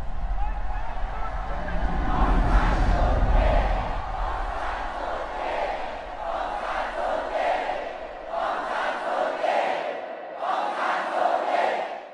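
A large crowd shouting and chanting the name 'Aung San Suu Kyi' in repeated swells, roughly one a second. A low rumble sits underneath for the first few seconds and then fades.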